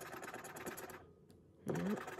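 A plastic scratcher scraping the coating off a paper scratch-off lottery ticket in quick, rapid strokes, stopping about a second in.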